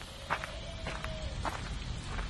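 Slow footsteps, about two a second, as sharp clicks over a low rumble, with a faint held tone about a second long partway through.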